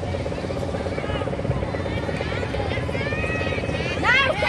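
A steady machine drone with a fast, even pulse carries on over a low outdoor rumble. Players' distant shouts and calls break in at intervals across the field.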